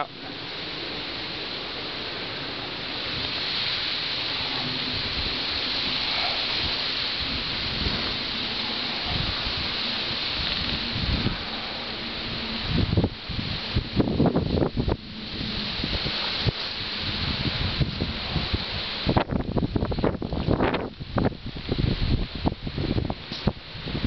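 Wind rustling through leafy trees with a steady rushing hiss, and gusts buffeting the microphone in uneven bumps over the second half.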